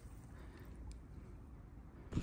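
Almost quiet: faint, steady outdoor background noise with a slight low rumble and no distinct sound.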